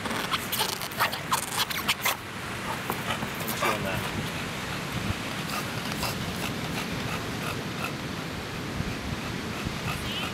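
English bulldog mouthing and rubbing his face on a surfboard's rubber traction pad: a rapid run of scratchy scrapes and clicks for about the first two seconds. Then a steady wash of beach background noise with faint voices.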